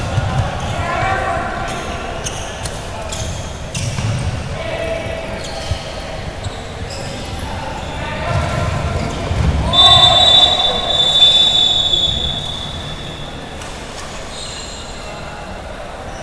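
Floorball game play in an echoing sports hall: the plastic ball clacking off sticks and the rink boards in scattered knocks, with players shouting. About ten seconds in, a loud high steady tone is held for about three seconds during the loudest stretch.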